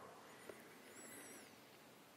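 Near silence: room tone, with a faint, brief high-pitched chirp about a second in.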